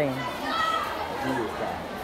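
Many schoolchildren talking and playing at once, a steady babble of young voices.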